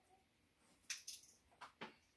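Near silence, broken by a few faint, short clicks and taps about a second in, as of small objects being handled.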